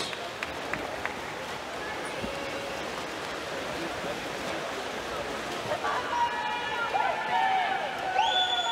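Steady indoor swimming-pool ambience while freestyle swimmers race: an even wash of water splashing and crowd noise. A voice comes in about six seconds in.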